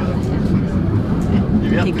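Hallstatt Salzbergbahn funicular car climbing, a steady low rumble heard from inside the cabin.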